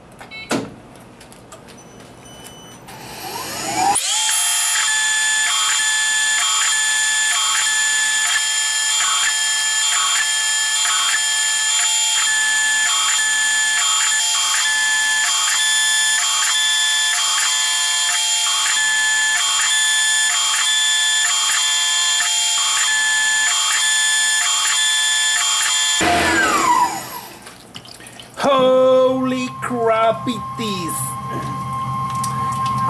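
Sped-up sound of a Tormach PCNC 1100 CNC mill cutting a part on its 4th-axis rotary table: the spindle winds up with a rising whine about 4 s in, then a high, steady machining whine with a regular pulse about one and a half times a second, and winds down with a falling whine near the end.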